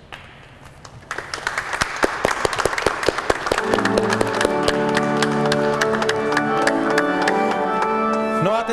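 A small group of guests clapping, starting about a second in. Organ chords join about three and a half seconds in and carry on under the applause.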